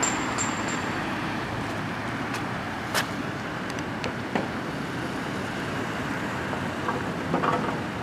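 Steady outdoor background rumble, with a couple of sharp ringing metallic taps about half a second apart in the first second, a loud click about three seconds in and a few scattered knocks later.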